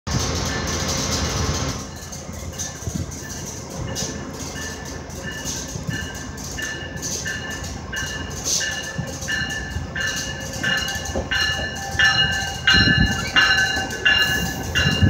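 GO Transit commuter train arriving, its warning bell ringing steadily, about three strikes every two seconds, growing louder as the train draws near. Low rumbling thumps of the wheels come in near the end. A burst of even rushing noise fills the first two seconds.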